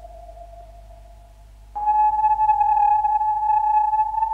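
Sustained electronic tones of a background music score. A steady tone fades away, then a louder, higher tone with overtones starts suddenly a little under two seconds in and holds, creeping slightly upward in pitch, over a faint low hum.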